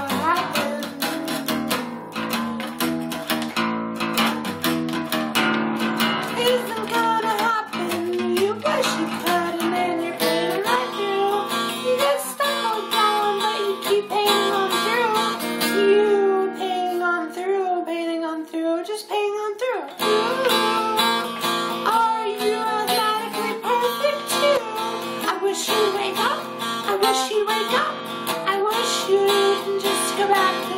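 Acoustic guitar strummed and picked, with a man singing along. Around the middle the low strumming drops away for a few seconds under a held, wavering sung line, then the full strumming comes back in sharply.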